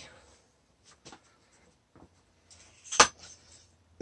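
Faint clicks and handling noise from a high-pressure hand pump being worked to fill an air-rifle gas ram, with one sharp click about three seconds in.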